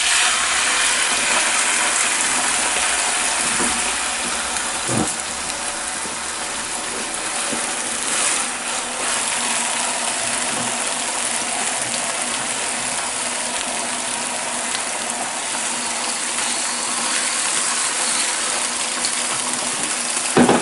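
Chicken breast fillets sizzling steadily in a hot non-stick frying pan as more pieces are laid in.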